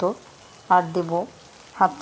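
Onion, tomato and spice masala frying in mustard oil in a wok, a faint steady sizzle under a woman's voice speaking short phrases at the start, about a second in, and near the end.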